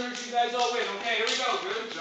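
Children's voices calling out and shouting over one another, with feet shuffling on the mats.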